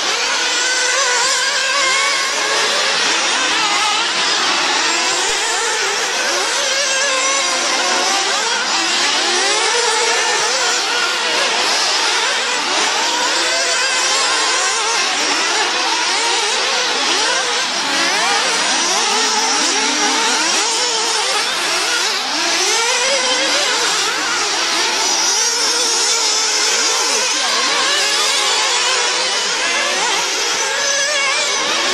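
Several 1/8-scale nitro RC buggies' small glow engines running together on track, with overlapping whines that keep rising and falling as each car revs up and backs off.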